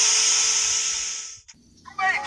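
A loud, steady hiss of noise with a faint steady tone beneath it, fading out and ending about one and a half seconds in.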